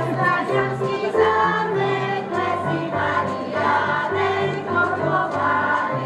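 A group of young children singing a folk song together, accompanied on an electronic keyboard with a steady, stepping bass line.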